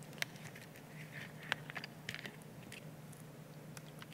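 A few faint clicks and crinkles of a plastic water bottle being picked up and opened, over a low steady hum.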